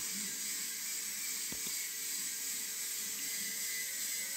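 Steady background hiss of the recording during a pause in the talk, with one faint click about one and a half seconds in.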